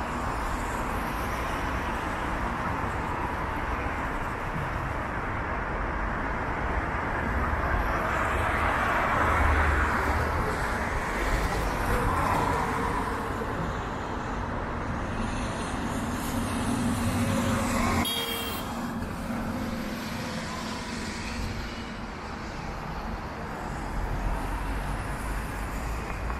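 Street traffic on wet roads: cars and a bus pass one after another, their engines and the hiss of tyres on wet asphalt swelling and fading. A sharp click sounds about 18 seconds in.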